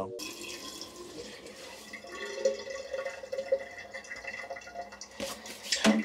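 Bathroom tap running into a sink during face washing and teeth brushing, with a few knocks near the end.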